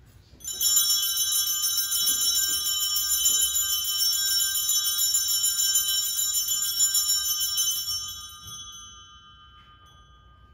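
Altar bells (sanctus bells) shaken in one continuous, bright jingling ring for about seven seconds, then fading away, rung at the elevation of the chalice during the consecration of the Mass.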